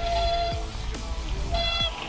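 Mountain bike disc brakes squealing under hard braking in mud: one held squeal at the start and a shorter one near the end, over knocks of the bike on the rough trail.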